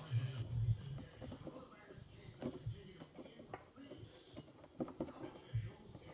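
Faint scattered clicks and taps of hands handling and pulling at the back panel of a tube amp head as it is worked loose.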